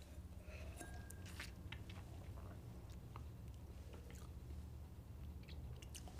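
Faint mouth sounds of a person sipping and tasting whiskey: small wet clicks and smacks scattered over a steady low room hum.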